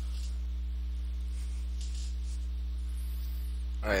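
Steady low electrical hum with a series of evenly spaced overtones, like mains hum in the audio feed. A man's voice says "alright" at the very end.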